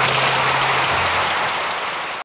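A dense, even hiss of noise that starts abruptly as the music cuts off, with a low hum beneath it that drops in pitch about a second in. It fades slightly near the end.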